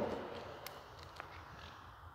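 Two faint footsteps on a hard tiled floor, about half a second apart, over quiet room tone.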